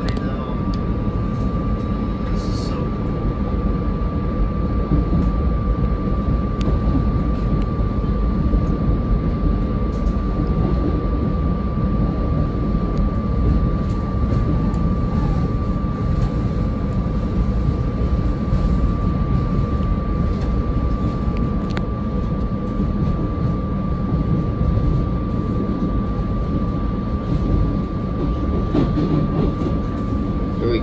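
Running noise of a SEPTA electric commuter train heard from inside the cab: a steady rumble of wheels on rail with a constant high whine over it and a few faint clicks.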